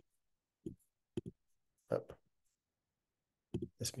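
A few short, sharp clicks separated by dead-silent gaps, with a brief 'oh' about two seconds in; speech resumes near the end.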